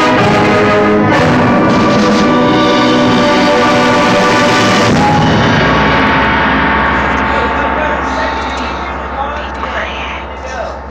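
Concert band playing loudly in full harmony, stopping with a sharp final stroke about five seconds in; after that a single held note and the ring of the room fade away, with faint voices near the end.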